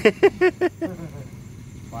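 A person's voice in a quick run of about six short, evenly spaced syllables in the first second, over a steady low hum.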